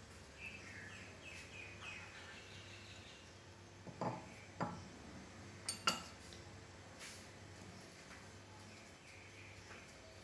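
A few light clinks as chocolate pieces are picked out of a small ceramic bowl, about four seconds in and twice more near six seconds, over a faint steady hum.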